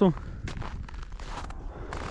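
Footsteps in snow on a frozen lake, a string of irregular steps, with a low wind rumble on the microphone.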